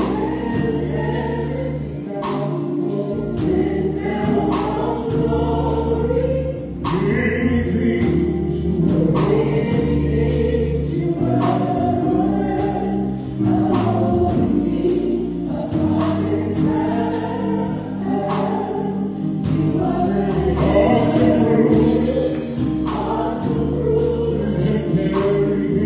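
Live gospel music: a woman and a man singing into handheld microphones over sustained bass notes and a steady drum beat.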